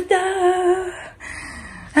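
A woman's voice holding one sung note, a drawn-out 'taaa' flourish, for about the first second, then a quieter stretch.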